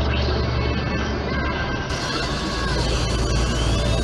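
Music from a radio broadcast over a steady low hum. About halfway through, the sound turns brighter as the broadcast moves on to a new segment.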